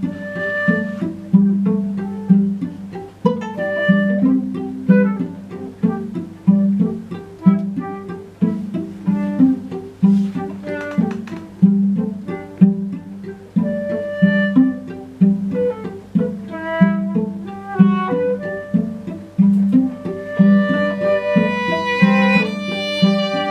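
Contemporary chamber music for strings: a steady, repeating plucked ostinato in the low strings, a little faster than one note per second, with short higher string notes woven over it. About twenty seconds in, a sustained bowed violin line comes in above.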